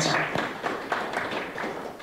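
A small audience applauding, a dense patter of claps that dies away over the two seconds.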